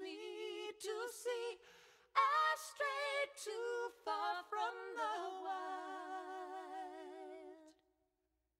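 Quiet unaccompanied singing voice with strong vibrato, in short phrases and then one long held note that stops abruptly shortly before the end, as the track fades to silence.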